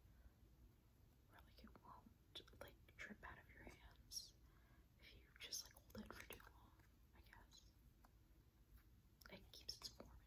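Very quiet close-up whispering, broken by short soft clicks and sticky crackles of slime being handled in a plastic tub.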